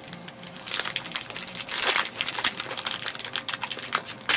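Foil trading-card pack wrappers crinkling and crackling in irregular bursts as the packs are handled and opened, busiest about a second in.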